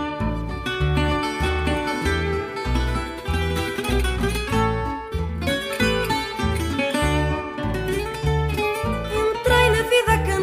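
Instrumental introduction of a fado: a Portuguese guitar plays a plucked melody over a steady bass line of about two notes a second.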